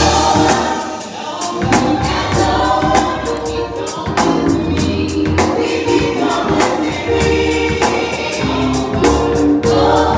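Gospel choir singing over church organ, with a steady beat of drum hits.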